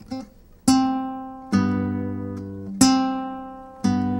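Acoustic guitar played fingerstyle: four plucked chords about a second apart, each left to ring and fade. They demonstrate a pull-off from C on the second string to the open string, made together with a thumb-picked bass note on the third fret of the sixth string.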